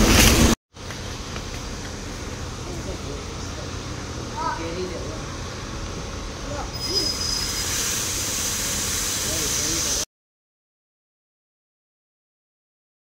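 Steady low rumble of traffic and idling vehicles around a taxi stand, with faint distant voices and a brief high tone about seven seconds in. The sound cuts to silence about ten seconds in.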